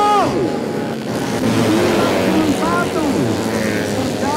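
Four-stroke 130 cc underbone racing motorcycles at high revs passing close by. A high engine note drops sharply in pitch right at the start as one bike goes past, then more engine notes rise and fall as others follow.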